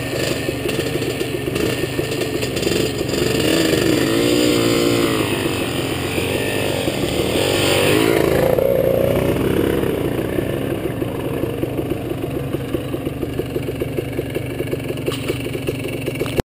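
ATV engine revving up and down with the throttle while riding a dirt trail, then settling to a steadier, lower running note for the last several seconds.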